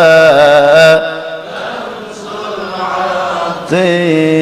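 A man singing a line of an Arabic devotional poem into a microphone, in a wavering, ornamented melody. The singing breaks off about a second in, leaving a quieter stretch, then starts again just before the end.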